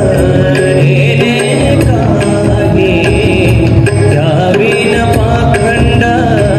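Live devotional bhajan through a PA: a singer's voice over harmonium, with tabla and a two-headed barrel drum playing.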